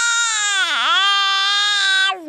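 A toddler's long, loud, high-pitched 'aah' scream, held on one breath, with a brief dip in pitch a little under a second in.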